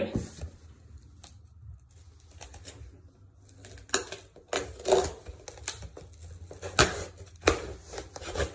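Cardboard shipping box being handled and its packing tape cut open with a knife: a string of sharp taps, clicks and scrapes on the cardboard, the loudest about four to seven and a half seconds in.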